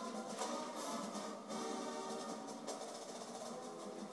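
Marching band playing, with sustained notes over drum hits, heard through a television's speaker.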